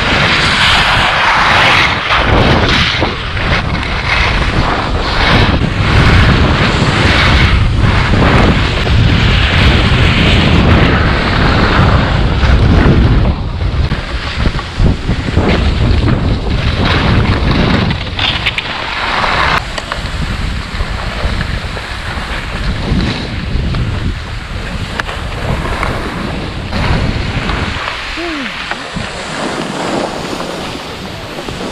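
Wind rumbling on a GoPro's microphone during a ski run, with the hiss and scrape of skis sliding over packed snow that swells with each turn, loudest near the start, about ten seconds in and near twenty seconds.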